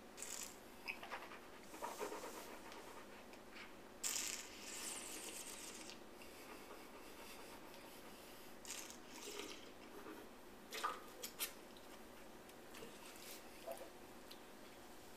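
Quiet mouth sounds of a wine taster sipping and working a mouthful of wine, with a breathy rush of air about four seconds in. A few light clicks come around eleven seconds from objects handled on the table.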